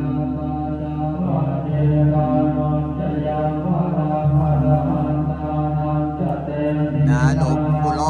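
Thai Buddhist monks chanting Pali verses together in a steady, droning recitation that moves between held notes.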